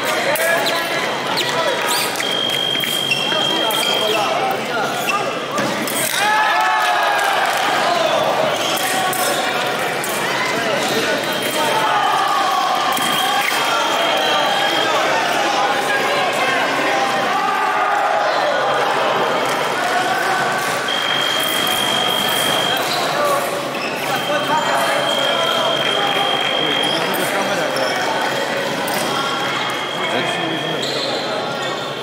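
Fencing footwork: quick steps, stamps and knocks on the piste, with shouts echoing around a large hall. A steady high electronic tone sounds four times, lasting from one to several seconds, as scoring machines signal touches.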